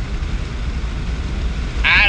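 Steady low rumble of a vehicle being driven, heard from inside the cab: engine and road noise.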